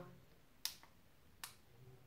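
Two short, sharp clicks a little under a second apart, from pressing the temperature buttons on a ceramic curling iron; otherwise near silence.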